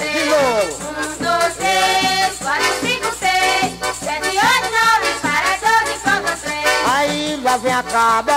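Pastoril folk music from Pernambuco: a melody with sliding notes over a steady percussion beat. The melody falls in a slide near the start and rises in another near the end.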